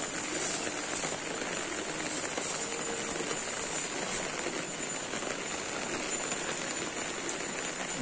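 Heavy rain falling steadily, an even hiss.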